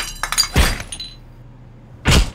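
Something being smashed: a sharp crash at the start, scattered clinking pieces, then a second, heavier crash about half a second in, all dying away by about a second in.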